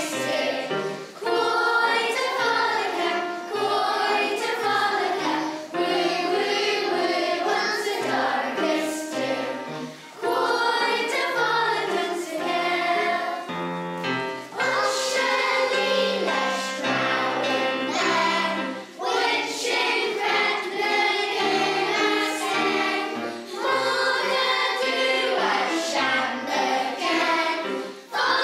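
A choir of young children singing a song in Manx Gaelic, with musical accompaniment that carries sustained low notes beneath the voices.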